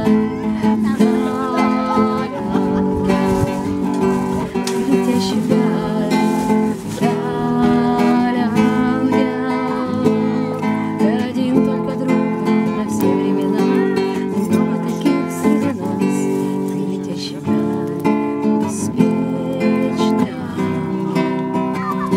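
Acoustic guitar strummed in a song accompaniment, chords changing steadily, with a woman singing along.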